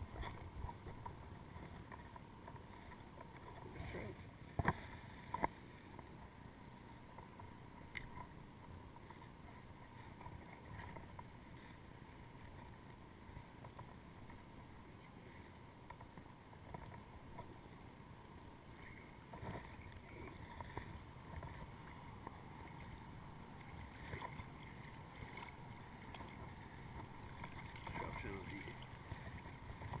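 Quiet water sounds and close handling noises as a trout is taken from a landing net and put on a stringer, with a few sharp knocks about four to five seconds in and small scattered clicks.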